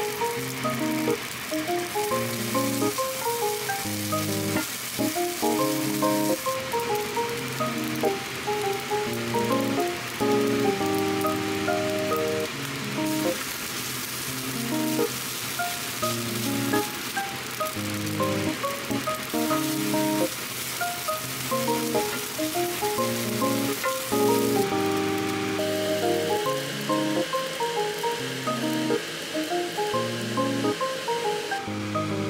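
Rice, egg and cherry tomatoes sizzling in a frying pan as they are stir-fried, over background music with a steady melody. The sizzle drops back for stretches while the music carries on.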